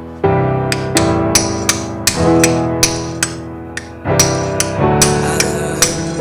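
Repeated sharp hammer blows on a steel punch, about two to three a second, driving out a seized wheel bearing from a 1989 Yamaha Banshee front hub clamped in a vise. Background music with sustained string and piano tones plays under the strikes.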